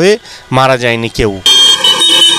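A vehicle horn sounds one long, steady blast that starts abruptly about a second and a half in, amid street traffic.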